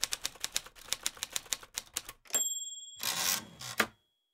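Typewriter sound effect: keys clacking at about six strokes a second for two seconds, then a bell ding at the end of the line, followed by the carriage being pushed back and a final clunk.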